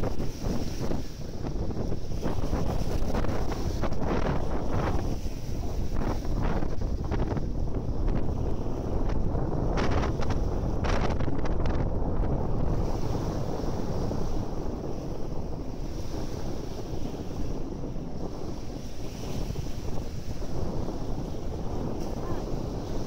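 Wind buffeting the microphone in a steady low rumble, with small waves breaking and washing up the sand; a few brief rushes stand out in the first half.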